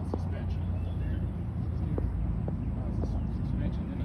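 Semi-truck diesel engine idling close by: a steady low rumble.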